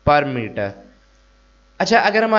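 Faint steady electrical mains hum in the recording, heard plainly in a pause of about a second between short stretches of a man speaking.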